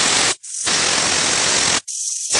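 Prestige pressure cooker whistling: steam forcing past the whistle weight in a loud, steady hiss, the sign the cooker is at full pressure. The hiss cuts off abruptly twice, briefly each time.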